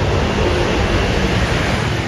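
City street traffic noise: a steady, even rush of passing vehicles.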